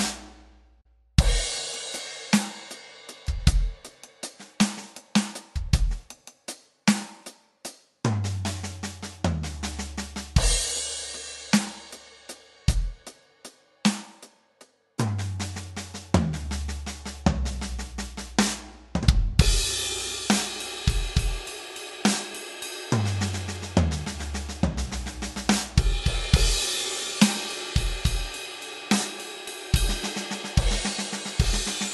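Electronic drum kit playing a 12/8 groove built on the paradiddle-diddle rudiment, with bass drum, snare and toms, and crash cymbals struck at the start of phrases. The playing stops dead twice, just after the start and about halfway through, each time restarting on a crash hit.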